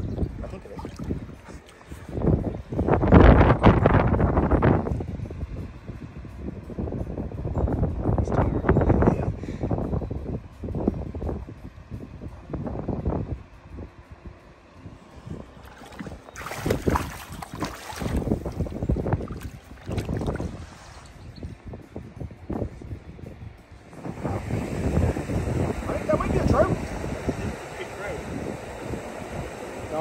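River water splashing and sloshing in irregular bursts around hands holding a salmon in the shallows, with wind buffeting the microphone. About 24 seconds in, it changes to a steadier rush of wind and moving water.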